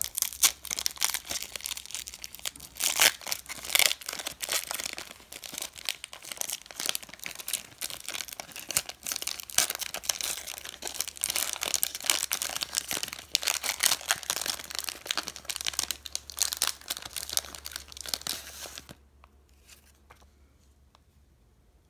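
A foil Pokemon VS booster pack wrapper crinkling and tearing as it is pulled open by hand, in a continuous crackle with sharper rips now and then. It stops about a second before the end.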